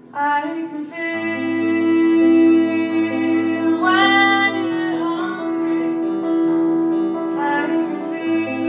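Live folk song on two acoustic guitars with a woman singing lead, coming in loud at the start after a quieter stretch.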